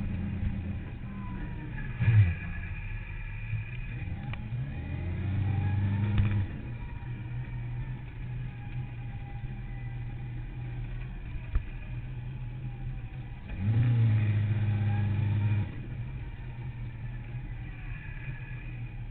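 Sport motorcycle engine heard from a camera mounted on the bike, running at low revs with a short loud burst about two seconds in. The revs rise for about two seconds around five seconds in, and again for about two seconds near fourteen seconds.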